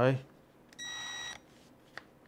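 A single high electronic beep, steady and about half a second long, from a cordless power screwdriver as its clutch setting is being turned down. A faint click follows near the end.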